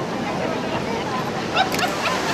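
Voices calling out, with a few short sharp calls near the end, over a steady rush of wind and water.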